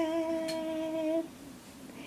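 A woman's voice holding one steady sung note for just over a second, then stopping.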